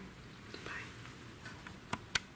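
A faint breathy whisper from a person, then a single sharp click just before the end.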